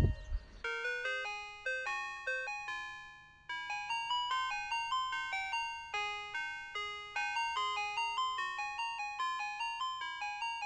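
Ice cream truck jingle: a chiming melody of bell-like notes, each fading after it strikes, at about two or three notes a second, with a short pause about three seconds in.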